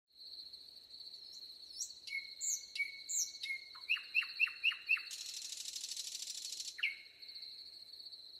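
Several birds singing, with chirps and whistles over a continuous high-pitched trill. About four seconds in comes a run of five quick falling notes, then a dry buzzing trill lasting about two seconds.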